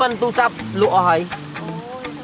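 Speech: a man and a woman talking to each other in conversation.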